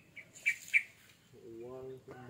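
A small bird chirping: three short, high chirps in quick succession in the first second.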